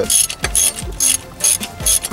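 Hand ratchet wrench clicking in short back-strokes, about two a second, as exhaust manifold bolts are run in on a 2.4L Ecotec engine.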